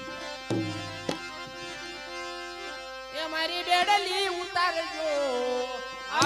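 Bhajan accompaniment on harmonium, held reedy notes, with two sharp tabla strikes about half a second and a second in. From about three seconds a wavering, sliding melodic line joins over the held notes.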